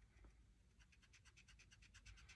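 Faint, quick back-and-forth scratching of a Pro Marker blender pen's nib rubbed on card, several strokes a second, starting about half a second in. The blender is pushing back ink that went over the edge of the colouring.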